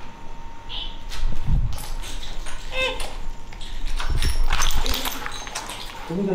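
A German shepherd gives a short whimpering cry about halfway through. Heavy thuds and scuffs of footsteps on rubble come before and after it.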